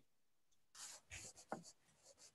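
Faint scratchy strokes of writing, a few short strokes about a second in with a small click among them.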